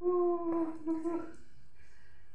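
A dog howling: one long call, sliding slightly down in pitch, that breaks off after about a second and a half.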